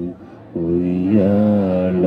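A man's voice chanting in song: a brief breath pause, then a long held note that bends up and down in a slow melodic turn.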